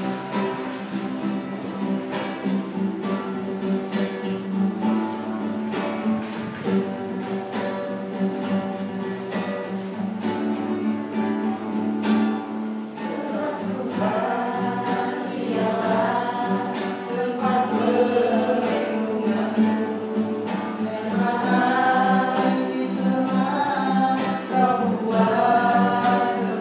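A small mixed group of young voices singing a scripture song together, accompanied by a strummed classical guitar. The singing grows stronger from about halfway through.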